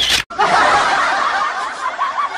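Laugh track: a crowd laughing together, coming in abruptly after a short sound at the start and slowly getting quieter.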